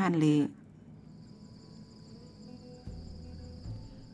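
Steady, faint, high-pitched chirring of field insects, starting about a second in, with a brief low rumble about three seconds in.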